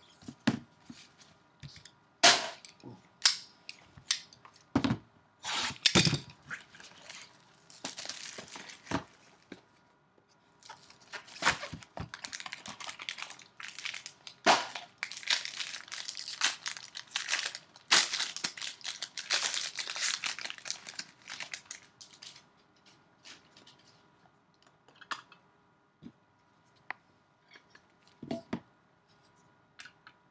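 Clear plastic wrapping on trading card packaging being torn open and crinkled by hand: several sharp snaps in the first few seconds, then about ten seconds of dense crinkling, then a few light clicks.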